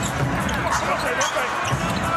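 Live basketball game sound from the arena floor: the ball bouncing on the hardwood court amid the players' movement and the crowd's background noise.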